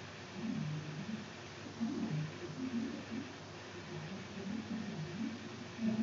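A person's low voice making short, repeated grunts of effort while straining to force a tight seal ring into place.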